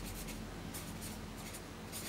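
Marker pen writing on paper: a series of short, faint scratching strokes as letters are drawn.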